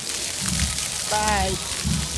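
Ground-level fountain jets spraying and splashing onto wet paving stones: a steady, dense hiss of falling water with a low rumble underneath. A short voice sounds a little past halfway, falling in pitch.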